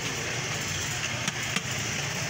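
Steady street noise with a low traffic hum and faint voices. Two sharp clicks come close together about one and a half seconds in.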